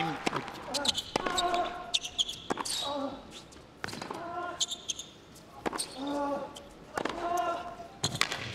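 Tennis rally on an indoor hard court with no crowd: sharp racket strikes and ball bounces, a high squeak of a shoe on the court, and short vocal grunts from the players as they hit.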